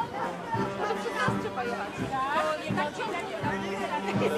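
Brass band playing, with a bass line pulsing on a steady beat, while people chat close by over the music.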